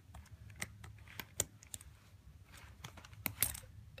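A coat being handled: scattered light, irregular clicks of its snaps and buttons over faint fabric rustling, with sharper clicks about a second and a half in and again near the end.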